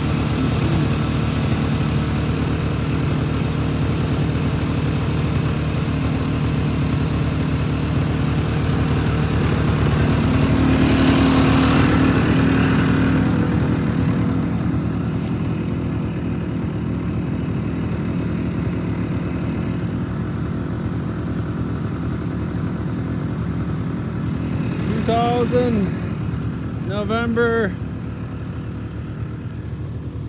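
Snowmobile engine idling steadily, swelling louder for a few seconds about ten seconds in.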